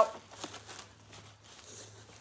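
Faint rustling and crinkling of packaging as a doll is lifted out of its box, with a few light ticks.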